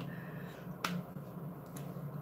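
A single sharp click a little under a second in, with a fainter tick near the end, as a pressed-powder makeup palette's lid is opened.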